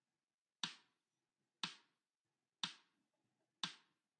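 Metronome count-in from the Yousician app: four short, sharp clicks, one a second, counting in a bar of 4/4 before the piano exercise begins.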